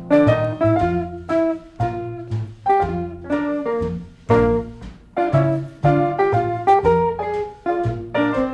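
Instrumental break of a 1949 Decca 78 rpm popular-song record, with no vocal: a melody of sharply struck, quickly fading notes, about two a second, over a bass line in a swing-style rhythm accompaniment.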